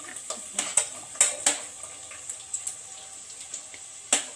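Sliced onions frying in oil in a non-stick pot while a spatula stirs them: several scrapes and knocks against the pot in the first second and a half, then a low, steady sizzle with a few light taps.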